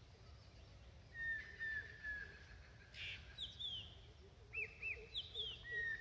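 Faint bird chirps: short calls that fall in pitch, coming in quick runs of two or three.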